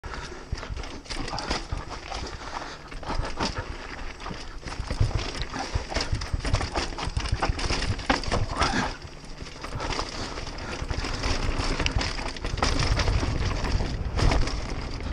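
Mountain bike riding down a rocky dirt trail: tyres crunching over dirt, stones and dry leaves, with the bike rattling and knocking over each bump and a steady rumble of wind on the camera microphone. A brief squeak about nine seconds in.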